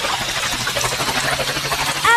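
Cartoon sound effect of a wheelchair wheel spinning in a puddle: a steady splashing, hissing spray with a low hum underneath.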